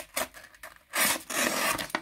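Small plain steel knife blade slicing through a sheet of paper with a scratchy, rasping sound: a short cut just after the start, then a longer one from about a second in. The cut is a bit snaggy rather than clean, the sign of a blade that is not very sharp.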